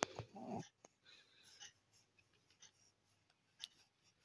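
Two-month-old baby giving a short coo about half a second in, followed by faint rustling and small clicks.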